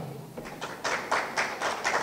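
Light, uneven audience clapping that begins about half a second in, several claps a second.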